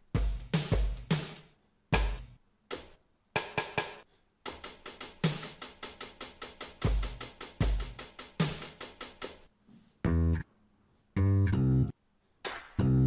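Drum samples of BandLab's Organic Pop Creator Kit played from controller pads: separate kick, snare and hi-hat hits, then a fast even run of repeated hits in the middle. About ten seconds in, a pitched sample comes in as short held notes.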